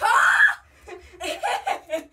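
Teenage girls laughing excitedly: a loud burst rising in pitch right at the start, then a run of shorter laughs.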